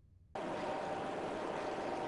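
Silence, then about a third of a second in a steady hiss of background noise starts abruptly, with a faint, even hum tone running through it.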